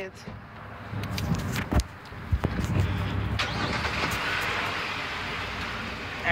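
Road traffic: a steady low motor-vehicle hum with a car passing, its noise swelling from about halfway through. A few sharp knocks, from handling of the handheld phone, come near the middle.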